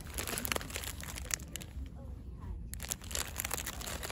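Plastic-wrapped packs of paper straws crinkling and rustling in short crackles as a hand flips through them on a hanging store display.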